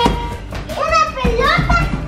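Young girls' excited, high-pitched squeals and calls, with no clear words, in short bursts that rise and fall.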